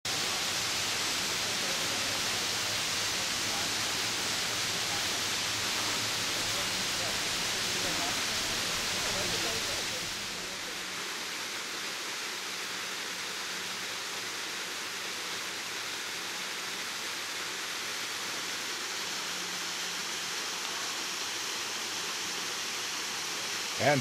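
Waterfall: a steady rush of falling water, dropping a little in level about ten seconds in.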